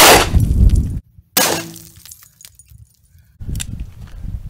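Ruger GP100 .357 Magnum revolver shots fired at a bulletproof plastic window panel: a very loud report right at the start with a ringing echo lasting about a second, then a second loud report about a second and a half in.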